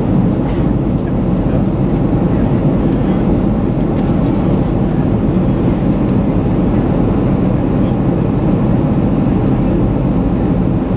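Steady, loud cabin noise of a jet airliner in flight, heard inside the cabin at a window seat beside the wing-mounted turbofan engine: engine and rushing airflow, deep and even with no change.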